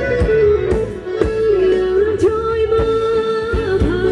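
Live Thai ramwong dance music from a band: a lead melody line that holds notes and slides between them, over a steady drum beat of about two strokes a second.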